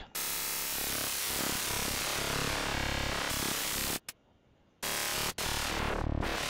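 FM-synthesized note from the ZynAddSubFX software synthesizer, its timbre shifting as the FM gain is turned. One long note of about four seconds, then after a short silence two brief notes.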